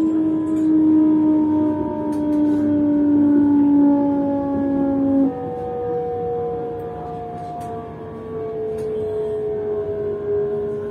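Electric train's traction motor whine falling slowly in pitch as the train slows for a station, jumping up in pitch about five seconds in and then falling again, over the low rumble of the train running on the track, heard from inside the carriage.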